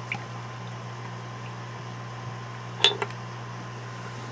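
Steady low background hum, with a faint click just after the start and one short, sharper tap near the three-second mark as a glass mug of beer is handled.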